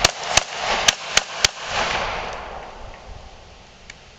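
Glock 21 .45 ACP pistol firing a quick string of five shots in the first second and a half, each a sharp crack, with the echo dying away over the following second.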